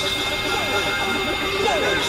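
Experimental synthesizer noise music: several steady high tones held over a dense hiss, with short falling pitch glides repeating through it.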